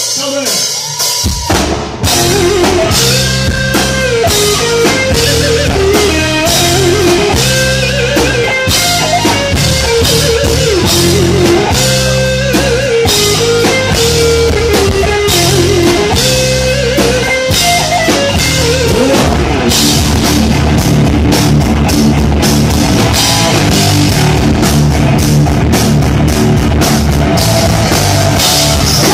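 Live rock band playing an instrumental intro: a lead electric guitar melody over drum kit and bass. The full band comes in about two seconds in, and the playing turns denser and steadier about two-thirds of the way through.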